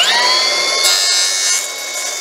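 Milwaukee M18 FUEL cordless brushless plunge saw whining up to full speed at the start, then running steady with a high whine and a noisier cutting hiss. Its plunged blade is making the first pass that trims the plastic anti-splinter strip. The sound eases a little about one and a half seconds in.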